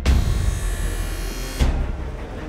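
Hockey skate blade being sharpened on a grinding wheel: a high grinding hiss that stops about a second and a half in, heard over background music with a heavy drum beat.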